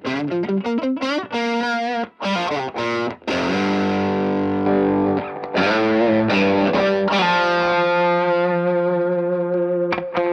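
Electric guitar played through overdrive and effects in a multi-amp wet-dry-wet rig. It opens with a quick run of notes, then moves to long chords that ring and sustain.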